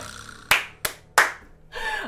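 Three quick hand claps about a third of a second apart, starting about half a second in.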